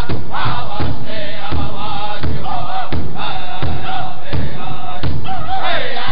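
Powwow drum group singing a women's fancy dance song: several men's high-pitched voices together over steady, even beats on a large hide drum.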